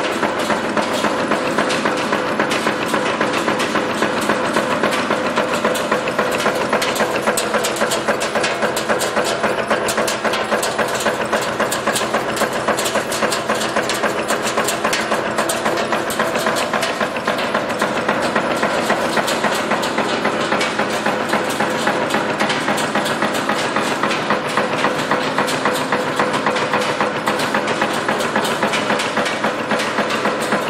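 Z94-4C automatic nail making machine running steadily, a loud rapid mechanical clatter of evenly repeated strokes as it turns wire into nails.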